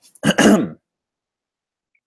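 A man briefly clears his throat once, near the start.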